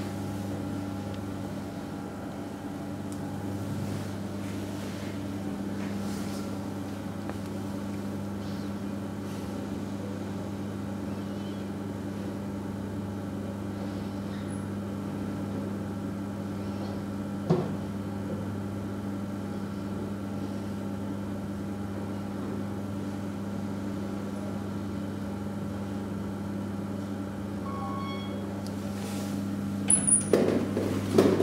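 A steady low machine hum, with a single click a little past halfway. Near the end comes a short electronic chime as the elevator arrives at the landing, just before its doors open.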